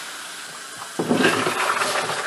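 Water splashing in a utility sink from a running faucet as dirty wash water is poured out of a rotary tumbler drum into a sieve. About a second in, the splashing suddenly gets louder and stays loud.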